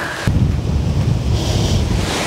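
Wind buffeting the microphone: a heavy low rumble that comes in suddenly about a quarter of a second in.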